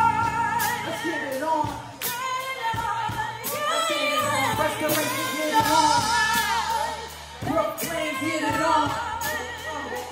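Live band music with women singing: held, wavering sung notes over steady bass notes and drum strokes.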